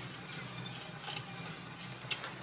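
Drum coffee roaster running with a steady hum as the beans tumble in the drum, with a few sharp, scattered clicks: the beans cracking as their remaining moisture escapes and they expand.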